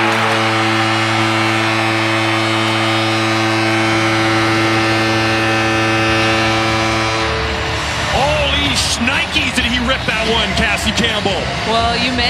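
Seattle Kraken arena goal horn sounding one long, steady, deep blast for about seven seconds over a cheering crowd, signalling a home goal. Goal music then takes over.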